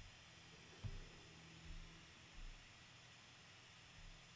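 Near silence: room tone, with three faint, soft low bumps.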